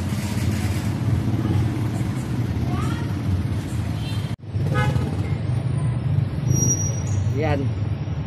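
Steady low rumble of a motorcycle engine idling, with a few brief voices over it; the sound cuts out for an instant just after four seconds.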